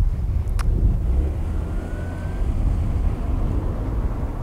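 Low, steady outdoor rumble with a single sharp click about half a second in and a faint, brief rising tone in the middle.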